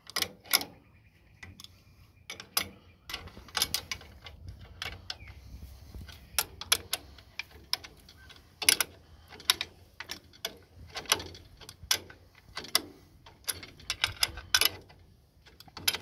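Adjustable wrench working a bolt on a steel cultivator shank clamp: irregular sharp metal clicks and clinks as the wrench meets the nut and brackets.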